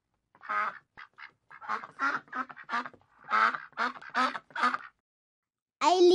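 A duck quacking: a run of about nine short quacks in quick succession that stops about a second before the end.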